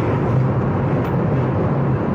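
Steady low drone inside a car's cabin: engine and road noise with no breaks or changes.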